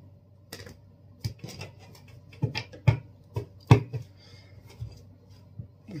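Tarot cards being handled, drawn from the deck and laid down: a string of irregular sharp clicks and taps, the loudest about halfway through.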